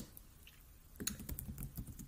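Computer keyboard typing, faint: a quick run of keystrokes beginning about a second in.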